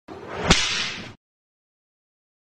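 A whoosh sound effect that swells to a sharp whip-like crack about half a second in, then fades and cuts off abruptly after about a second: a transition sting for a logo reveal.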